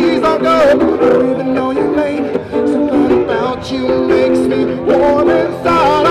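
A busker's song: an acoustic-electric guitar played with singing, amplified through a small guitar amplifier.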